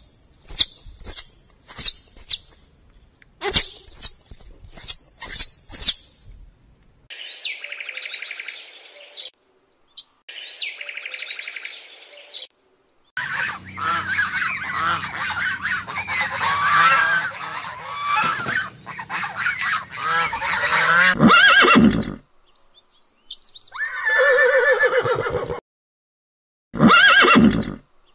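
A run of different animal calls. First a quick series of high, falling chirps and two short buzzy calls, then about eight seconds of domestic goose honking and gabbling. Near the end come two horse whinnies.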